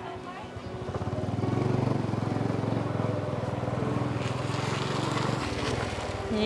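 Small step-through motorcycle's engine pulling away. It gets louder over the first two seconds, runs steadily, then drops off near the end.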